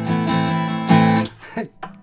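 Acoustic guitar strummed chords ringing, with a last strong strum about a second in that dies away soon after.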